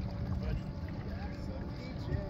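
Wind rumbling on the microphone over open water, with faint voices in the background.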